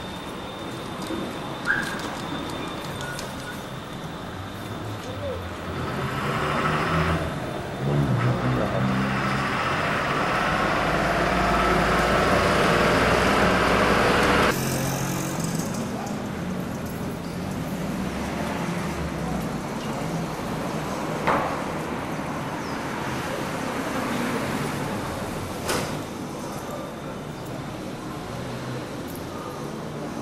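Street background on a camcorder's microphone: motor traffic and indistinct voices. It swells as a vehicle comes close about six seconds in, then cuts off abruptly halfway through at an edit, with a quieter street background after it.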